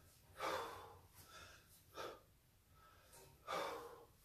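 A man breathing hard during kettlebell snatches: short forceful breaths, the two loudest about half a second in and near the end, three seconds apart in step with the reps, and a weaker breath between them.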